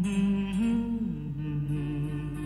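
Hindi film song in a jhankar remix: a slow, wordless melody line holding a few notes, stepping up about half a second in and down about a second in, over a light ticking beat.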